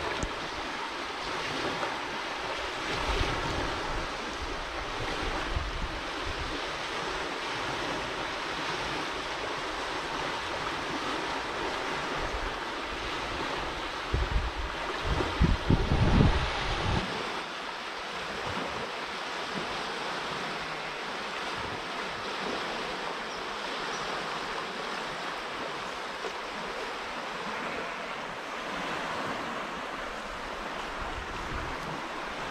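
Steady rush of canal water pouring over a low stone weir and rapids. Wind buffets the microphone with low rumbles, strongest about halfway through.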